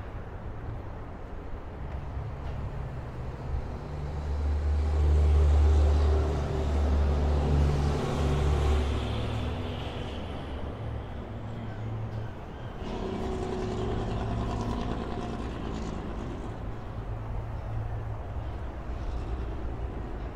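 Road traffic passing, with a deep engine rumble from a heavy vehicle swelling about four seconds in and fading by about nine. A second vehicle passes from about thirteen seconds.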